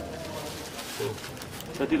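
Low, indistinct voices murmuring, then a person speaks clearly near the end.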